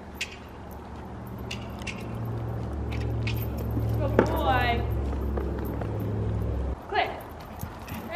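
Horse cantering on arena sand, its hoofbeats coming as faint soft thuds under a steady low rumble that cuts off abruptly near the end.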